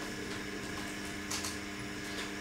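Press-room tone: a steady, faint low hum with light hiss, and one brief soft noise about a second and a half in.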